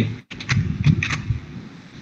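A few keystrokes on a computer keyboard, short sharp clicks in the first second and a half, fading out after.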